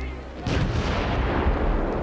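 Battle sound of artillery fire: a sudden loud onset about half a second in, then a continuous rumbling wash of gunfire and explosions.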